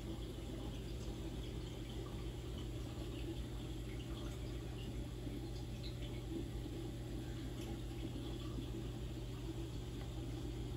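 Saltwater reef aquarium running: a steady trickle of circulating water over a constant low pump hum.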